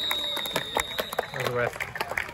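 A referee's whistle held in one long, steady blast that ends about a second and a half in, signalling full time. A man's voice comes in just as it stops.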